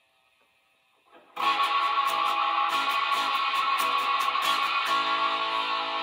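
Electric guitar strumming chords through a Tech 21 Fly Rig 5's Plexi overdrive and a Wampler Faux Spring Reverb turned fully up, into a Fender Mustang I amp. It comes in about a second in with repeated strums, three or four a second, and the last chord is left ringing near the end.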